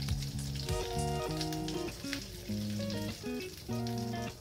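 Hot oil sizzling in a kadai as fried devil chops (egg-stuffed potato croquettes) are lifted out of it with a slotted spatula. Background music of held notes that change every half second or so plays over the sizzle.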